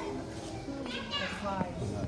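Children's voices talking and calling out over one another, the words unclear.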